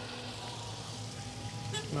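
Steady rush of fountain water with a low, even hum of vehicle engines underneath.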